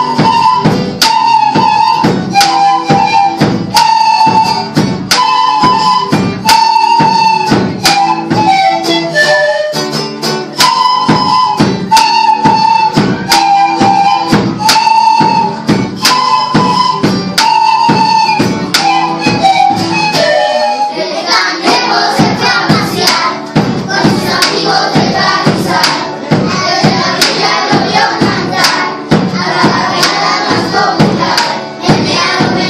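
A children's ensemble of small flutes playing a short repeated melody in unison over a steady beat on a large double-headed drum. About two-thirds of the way in the sound turns fuller and denser as the children's voices come in.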